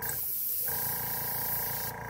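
Iwata airbrush blowing a steady hiss of air that cuts off just before the end, with paint not yet coming out of the nozzle.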